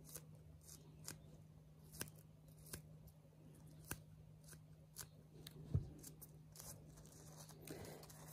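Small scissors snipping the tag ends of PVA tape tied around a PVA bag of pellets: a handful of faint, separate snips, over a faint steady hum.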